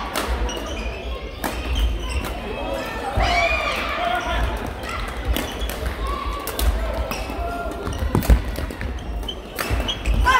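Badminton rally: sharp racket strikes on the shuttlecock and sneakers squeaking on the court floor, with voices in the background.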